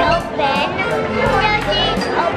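A young girl's high voice talking or exclaiming, over background music.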